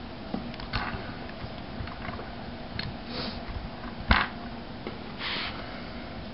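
Small plastic clicks and knocks from hands handling a laptop's white plastic screen bezel with a glass touch panel laid in it, with one sharper knock about four seconds in. Two short breathy hisses come in between.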